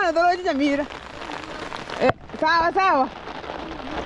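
Steady rain falling, under a voice that calls out twice, in the first second and again near three seconds, with a single sharp click between.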